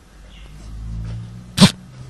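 A dog with distemper and a bleeding nose sneezes once, a single short, sharp burst about one and a half seconds in, over a low hum.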